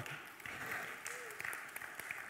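Faint, steady applause from a church congregation, a scattered patter of many hands clapping.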